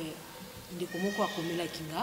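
A woman's voice speaking French, short and hesitant ('Je ne sais...'), after a brief pause.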